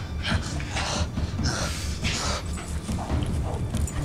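A golden retriever barking, a few short barks in the first half.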